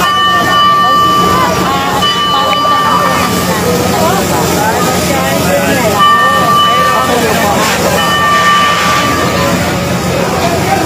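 A steady, high warning tone sounds in four long blasts of about one and a half seconds each, over a crowd's voices and a steady low engine drone.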